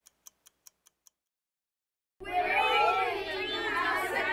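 Six faint clockwork ticks in quick succession, about five a second. From about two seconds in, a group of children's voices, loud and overlapping.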